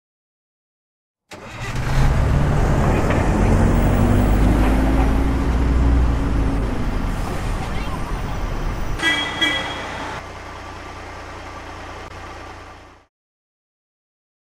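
Bus engine sound effect: a loud low engine rumble comes in suddenly about a second in, with a pitch that rises over a few seconds as if revving. A short burst of higher tones comes around nine seconds in, and the engine sound then fades out a second before the end.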